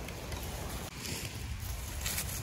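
Wind rumbling on the microphone, a steady low buffeting, with a brief rustling hiss about a second in.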